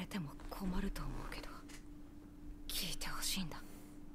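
Soft Japanese dialogue from the subtitled anime episode playing, quiet and partly breathy, over a steady faint hum.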